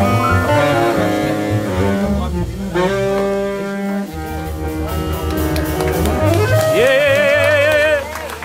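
A live jazz band of saxophone, upright double bass, piano and drums playing. Near the end a saxophone holds one long note with wide vibrato, then the band cuts off.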